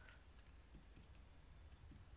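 Near silence with a few faint, scattered ticks: the tip of a white paint marker dabbing dots onto a paper journal page.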